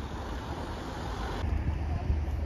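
Road traffic: tyre and engine noise from a vehicle on the road, which cuts off abruptly about one and a half seconds in, over a steady low rumble.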